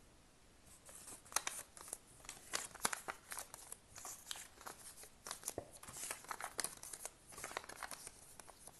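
Paper sticky notes being picked up off a table and handled: a quick run of paper crinkles and rustles, starting about a second in.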